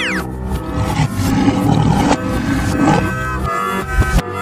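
A lion's roar sound effect over cheerful background music.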